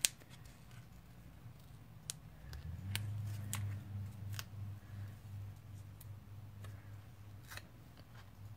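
Scattered light clicks and taps of paper die-cuts and card stock being handled and pressed into place on a card panel. A low steady hum comes in about three seconds in.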